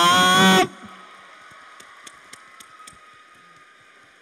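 A man's loud, drawn-out announcing call ends under a second in. It is followed by a low hush of the hall, with a few faint scattered clicks.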